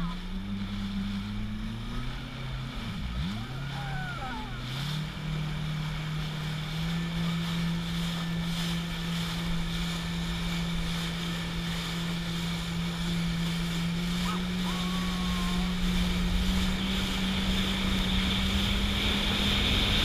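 Jet ski engine running at a steady cruising speed over a rush of water spray and wind. Its pitch drops and wavers a few seconds in, then holds and creeps slightly higher near the end.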